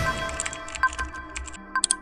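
Keyboard typing sound effect, a quick irregular run of key clicks, over electronic intro music whose low bass drops out about one and a half seconds in. A couple of sharper clicks come close together near the end.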